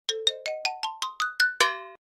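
Electronic chime sound effect: a quick run of about ten short, bell-like notes climbing steadily in pitch, ending on a longer final note about a second and a half in.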